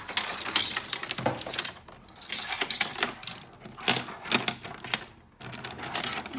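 The plastic bulbs of a Christmas light string clicking and clattering against each other and the scanner glass as they are handled and pressed down, in several bursts of rapid clicks.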